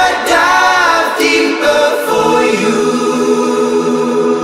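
Pop song outro: layered, choir-like sung vocal harmonies held over sustained chords, with no drums or bass.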